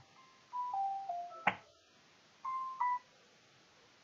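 Faint electronic tones: three short steady notes stepping down in pitch, a click, then about a second later two short higher notes, like a phone or computer notification melody.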